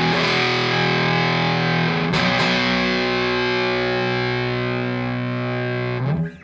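Nash T-57 Telecaster-style electric guitar played through a Walrus Audio Jupiter fuzz pedal into a Morgan RCA35 amp: thick fuzz-distorted chords. A chord is struck at the start and restruck twice about two seconds in, then rings out until it is muted near the end.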